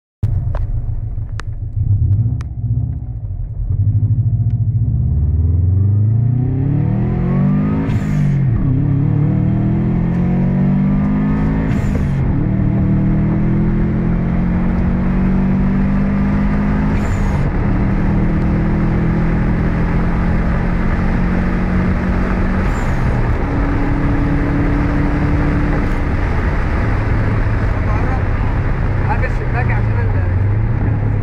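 Subaru Impreza WRX STi's turbocharged flat-four heard from inside the cabin, accelerating hard through the gears. The engine note climbs and falls back at each upshift, four times, each change marked by a brief sharp sound. It then runs at steady revs near the end.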